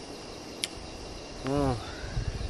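Steady high chorus of crickets, with a brief click just over half a second in. About a second and a half in, a short low hum from a man's voice rises and falls, louder than the insects.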